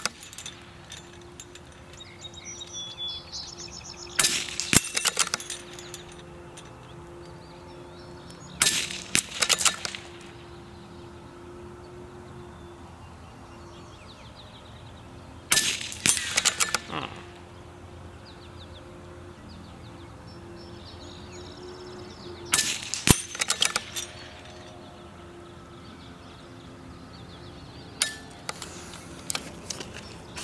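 CZ-455 Trainer bolt-action .22 LR rifle fired about five times, one sharp crack every five to seven seconds. Each shot is followed by quick clicks of the bolt being worked to chamber the next round.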